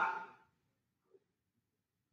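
Near silence: a man's coaching voice trails off in the first moment, then almost nothing is heard.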